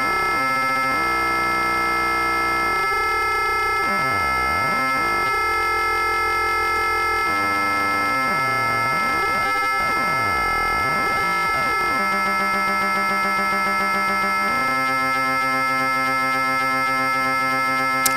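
Ring-modulated synthesizer tone from a Fonitronik MH31 VC Modulator, fed by Make Noise DPO oscillators: a steady electronic drone of many clashing tones. As the DPO's frequency knobs are turned, the side tones sweep up and down in arcs, and the sound jumps to a new set of pitches several times.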